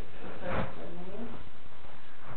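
A person's voice in short, indistinct utterances.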